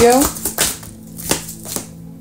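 A tarot deck being shuffled by hand: a few sharp, separate card snaps over soft background music.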